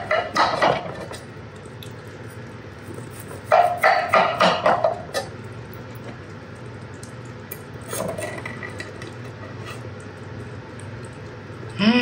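Mostly quiet room tone, with a man's voice murmuring briefly at the start and again about four seconds in.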